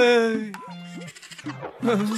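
A song: a wavering, held sung note over a steady bass line, dying away about half a second in; after a quieter gap the singing voice comes back near the end.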